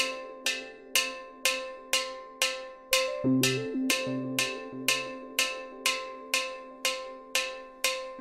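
Steelpan struck in a steady beat, about two sharp metallic hits a second, each ringing out and decaying over a held ring. A few low notes sound underneath starting about three seconds in.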